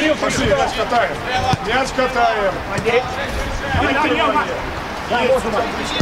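Men's voices shouting and calling to one another across a football pitch during play, in short overlapping calls.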